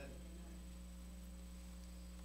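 Faint, steady electrical mains hum: a low, unchanging buzz made of several fixed tones.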